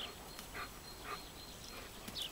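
A German Shepherd giving two short, high, falling whines about half a second apart while playing with a garden hose.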